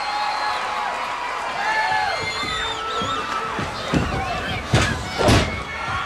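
Arena crowd shouting during a pro wrestling match, with three loud thuds in the last two seconds, the last two the loudest, as wrestlers' blows and bodies hit the ring.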